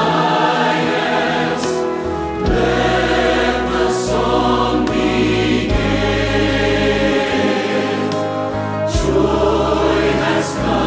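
Choir singing a Christmas worship song over full accompaniment, with a deep bass line and chords that change every couple of seconds. Cymbal swells come in about two seconds in, at four seconds and near the end.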